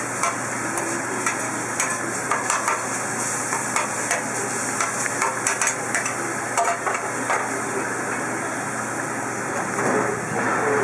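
Sliced steak, onions and green peppers sizzling on a flat-top griddle while metal spatulas chop the meat up, the blades clacking irregularly against the steel plate, with fewer clacks after about seven seconds.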